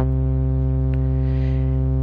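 A single low synth bass note from FL Studio's 3xOsc, held at one steady pitch. In Auto Sustain mode with range set to one, the channel arpeggiator sustains a lone held key instead of arpeggiating it.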